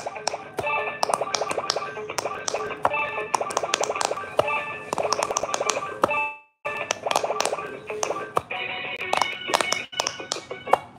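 Handheld electronic quick-push pop-it game playing its electronic tune and beeps while fingers rapidly press the silicone bubbles, giving a stream of quick clicks. About six seconds in the sound stops briefly, then the tune and pressing start again.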